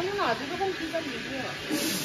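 Indistinct voices of several people chatting in the background, with a steady hiss coming in near the end.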